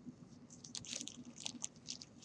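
Faint, irregular crinkling and squishing of a plastic zipper bag being squeezed and kneaded by hand, working wet clay inside it.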